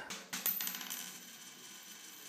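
A short ringing, metallic sound effect laid over a logo transition. It starts about a third of a second in and slowly fades away.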